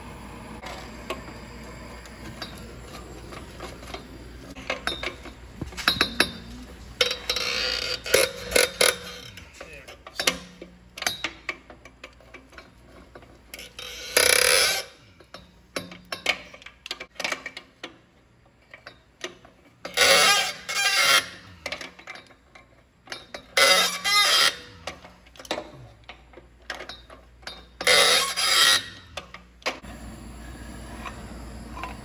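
MAP gas torch running with a steady hiss for the first several seconds, heating seized exhaust manifold bolts. Then a socket wrench and metal tools clink and knock against the bolts, with several short loud bursts of rattling.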